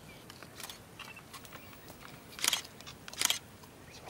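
Cheetah feeding on an impala carcass: short tearing and chewing sounds, with two louder ones about two and a half and three seconds in among fainter clicks.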